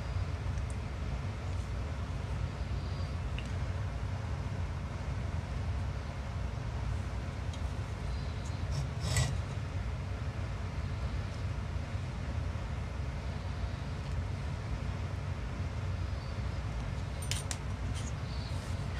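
Steady low background hum, with one brief click about nine seconds in and a couple of faint ticks near the end.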